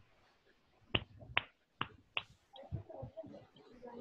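Four sharp clicks of a stylus tapping on a writing tablet, evenly spaced about 0.4 s apart, then faint low sounds.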